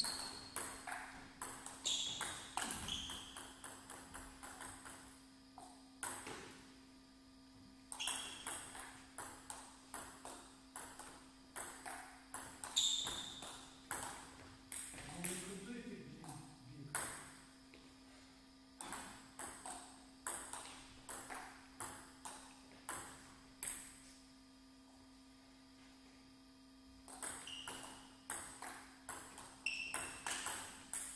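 Table tennis rallies: the ball clicking back and forth off the bats and the table in quick exchanges. There are several rallies with short pauses between points, and a brief voice about halfway through.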